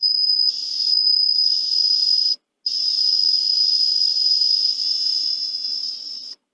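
Digital multimeter's continuity buzzer sounding a steady high-pitched beep as the probes touch the power-supply board, with a rough, hissy edge at times and a brief break about two and a half seconds in. It sounds bad: the meter is reading continuity, a short across the probed points.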